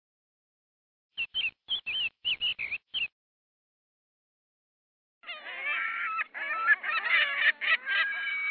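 Bird calls: starting about a second in, half a dozen short, high chirps over two seconds, then after a pause a busy chorus of many overlapping calls.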